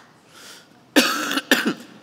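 A person coughing twice, about a second in, the two coughs about half a second apart, the first the longer.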